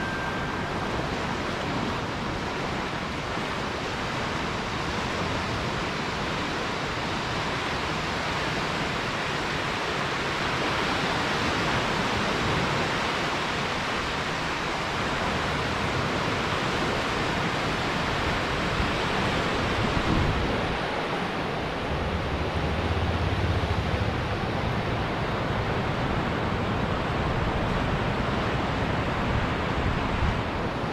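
Ocean surf washing onto a sandy beach, a steady rush of breaking waves, with wind rumbling on the microphone for a few seconds past the middle.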